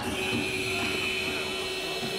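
A long, steady high-pitched signal tone over the hall's background noise in an ice hockey arena, lasting about two seconds.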